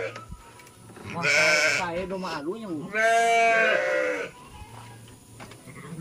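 Sheep bleating: two long bleats, about a second in and about three seconds in, the first with a wavering pitch.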